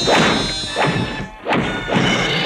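Cartoon crash sound effects: a rapid run of about five thumps and bangs over background music.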